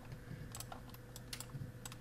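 A handful of computer keyboard taps, about six, in small clusters, over a faint steady electrical hum.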